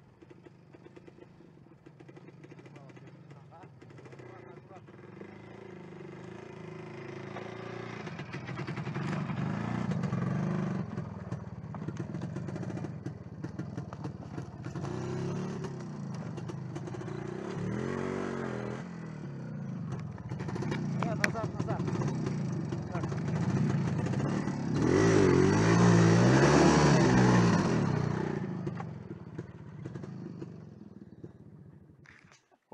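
Sidecar motorcycle engine running at low speed and growing louder, revving as it picks its way over the logs of a broken bridge. The engine pitch rises and falls about two-thirds of the way through and again, loudest, near the end.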